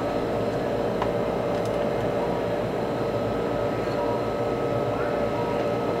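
Steady mechanical hum of room machinery, with a few faint steady tones over it and a faint click about a second in.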